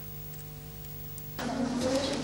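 Faint steady electrical hum with a few fixed tones, then about one and a half seconds in a louder, even background noise cuts in and swells slightly.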